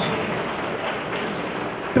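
Steady, even hiss of the hall's background noise picked up through the lectern microphone, with no distinct events.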